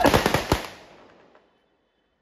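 A ragged volley of rifle shots from a ceremonial gun salute: several shots fired raggedly together over about half a second, with the echo dying away.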